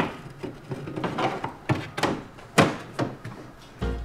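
Fiberglass body-kit fender knocking and scraping against the car's front bodywork as it is pushed into place for a test fit: a string of irregular knocks and taps, the loudest at the start and about two and a half seconds in.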